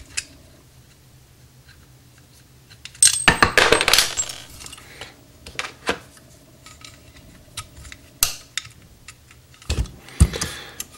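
Metal parts of a Rochester Quadrajet carburetor clinking and rattling as it is handled and a lever is fitted to its shaft. A dense run of clinks comes about three to four seconds in, then a few single clicks.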